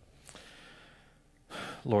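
A faint breath drawn in, sighing, into a microphone, followed near the end by a man's voice beginning to pray.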